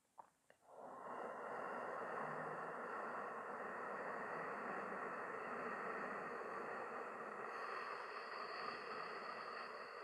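One long, slow, deep breath taken with the chin tucked in a chin lock: a steady airy rush that starts about a second in and holds evenly for about ten seconds, after two faint clicks.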